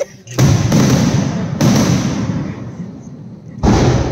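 Aerial fireworks shells bursting overhead: a loud bang just after the start, a second about a second later and a third near the end, each trailing off as it fades.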